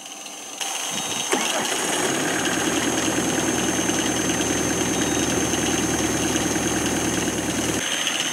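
Van engine cranked by its starter and catching just over a second in, then idling steadily. The cranking pulls the battery voltage down considerably.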